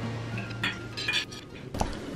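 Knife and fork clinking and scraping on dinner plates, with several short separate clinks.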